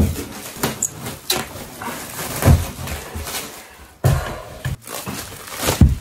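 Clear plastic stretch film crackling and rustling as it is pulled off a large roll and wrapped around a wooden frame, with many small clicks and a couple of dull thumps.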